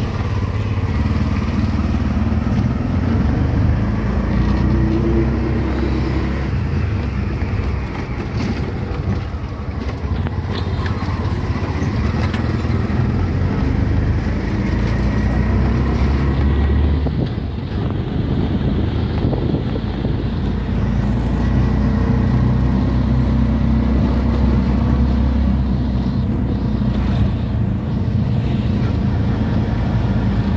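Auto-rickshaw running steadily along a road, its engine and road rumble heard from inside the open cab. The level dips briefly a little past halfway, then picks up again.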